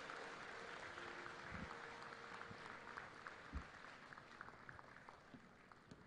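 Audience applause, faint and thinning out, with scattered individual claps that die away over the few seconds.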